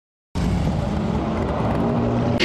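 Motorcycle engine running, starting suddenly about a third of a second in after silence.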